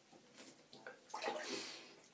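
Mühle R106 safety razor with a Gillette 7 O'Clock Sharp Edge blade scraping through lathered stubble on the upper lip: a couple of short rasps, then a longer, louder stroke in the second half.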